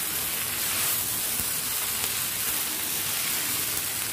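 Hakka noodles sizzling steadily in a hot pan on a high flame as they are tossed and mixed.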